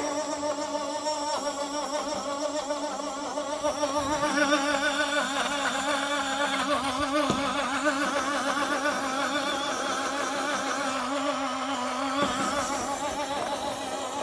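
Small portable bottle blender running steadily as it purées steamed apple with a little water into baby food, its motor whine wavering in pitch. It gets somewhat louder about four seconds in.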